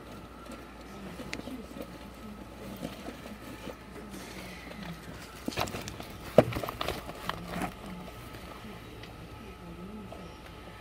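Faint background voices of people talking, over a faint steady tone. A short run of sharp clicks and knocks comes just past the middle, one of them much louder than the rest.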